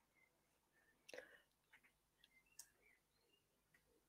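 Near silence: room tone with a couple of very faint short clicks.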